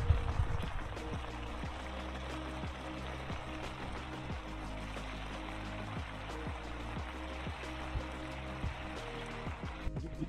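A pan of noodle broth at a rolling boil, a steady bubbling hiss, under background music.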